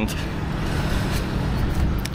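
Steady road traffic noise from motor vehicles driving past on the road.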